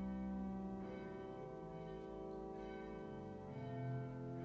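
Background instrumental music with slow, held bell-like chords; the low note changes about three and a half seconds in.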